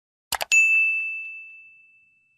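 Sound effect of a quick double mouse click followed by a single bright bell ding that rings on and fades away over about a second and a half.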